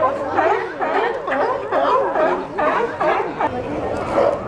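A chorus of California sea lions barking, many calls overlapping, several each second.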